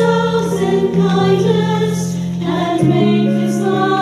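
Mixed church choir of men and women singing a hymn in parts, over long held low notes from a keyboard accompaniment.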